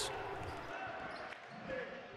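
Faint high-school basketball game ambience in a gym, with a ball bouncing, fading out.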